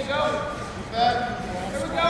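Mat-side shouting in a gym: coaches or teammates calling out to the wrestlers. There are two calls, the second held for over half a second.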